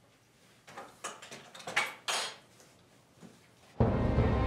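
A heavy wooden door being unlatched and swung open and shut: a run of knocks, rattles and scrapes over about two seconds. Music comes in suddenly just before the end.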